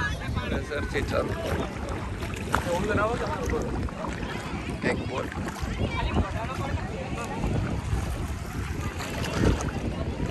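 Wind rumbling on the microphone by calm, shallow sea water, with people's voices chattering in the background.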